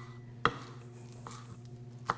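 Kitchen knife chopping a rolled-up bunch of cilantro on a plastic cutting board: one sharp knock about half a second in, then a fainter one a little past the middle.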